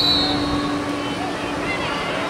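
A referee's whistle gives a short blast that ends a fraction of a second in, starting a lacrosse faceoff. A steady background of outdoor field noise and distant voices runs under it.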